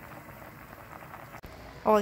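Beans boiling in an open pressure cooker, a steady bubbling hiss, with one short click about three-quarters of the way through.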